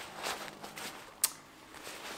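Soft rustling of a cloth drawstring bag being handled, with one sharp click a little over a second in.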